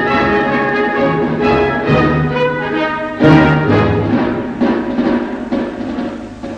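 Orchestral film-score music, with a loud accented hit a little after three seconds in, then easing off.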